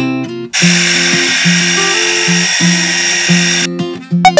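Small motor of a pink plastic toy stand mixer whirring for about three seconds, starting about half a second in and cutting off near the end. Acoustic guitar background music plays underneath.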